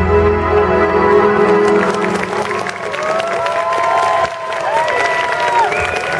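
Held notes of background music fade out over the first couple of seconds as audience applause and cheering take over, with several long rising-and-falling whoops over the clapping.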